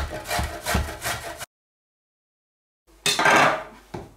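Zucchini being grated on a metal box grater over a wooden board: several quick rasping strokes, which cut off abruptly into a second and a half of dead silence, then one louder scraping burst near the end.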